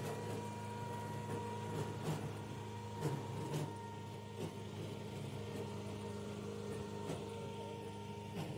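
Cable-pulling winch machine running steadily in forward, paying out its steel wire: a low, even machine hum with a few faint knocks.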